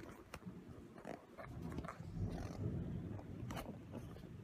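A kitten purring close to the microphone: a low, rough rumble with a few small clicks and fur rustles over it.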